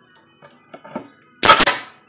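Air Locker AP700 pneumatic reverse nail gun firing once, about one and a half seconds in: a single sharp shot that dies away over half a second as it drives a nail back out through a pallet board. A few faint taps come before it as the nose is set over the nail.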